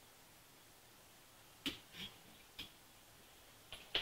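Small sharp clicks and taps from handling tools and thread at a fly-tying vise. There are about five in the second half, the loudest just before the end.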